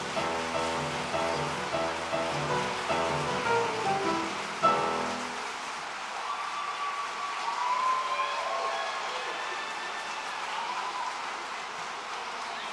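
Girls' school choir singing with piano, the song ending about five seconds in. Then audience applause with some cheering.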